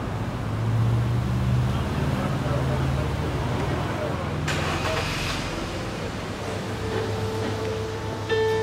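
Street traffic: a motor vehicle's engine running close by with a steady low hum, and a sudden hiss about halfway through that lasts about a second.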